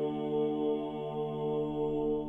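Gregorian chant sung by a vocal ensemble, holding one long sustained note without a break.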